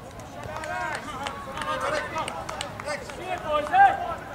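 Several voices on a football pitch shouting and calling out at once, overlapping, with one louder shout near the end.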